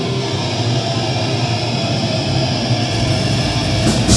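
Extreme metal band playing live: heavily distorted electric guitars and bass hold a dense wall of sound with no clear drum beat, the low end swelling near the end.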